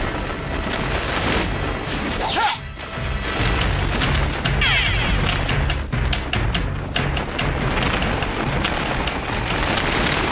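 Action-scene film soundtrack: background music with a low, steady beat under repeated booms and crashing impacts. Around the middle comes a cluster of sharp hits and sweeping tones.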